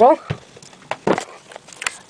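Big fuzzy dice tossed onto a wooden table, giving a few short, soft knocks as they land and tumble.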